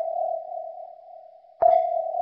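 Submarine sonar ping sound effect: a single-pitched ping rings and slowly fades, then a second ping strikes about a second and a half in and rings on.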